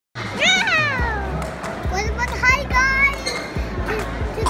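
A young child's voice talking to the camera: a long call falling in pitch within the first second, then quicker speech, over background music with steady low bass notes.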